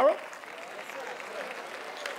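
Congregation applauding: a steady, even clapping that follows the preacher's line, with a few faint voices under it.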